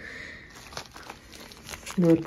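Plastic wrapping on a pack of tealight candles crinkling as the pack is picked up and handled, a run of light, irregular crackles.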